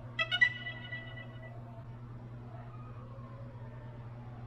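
DJI Neo drone's electronic start-up chime, a few quick bright beeping notes that ring out and fade within about a second, over a steady low hum.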